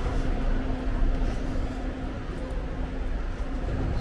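Steady low rumble of city street traffic, with a faint constant hum.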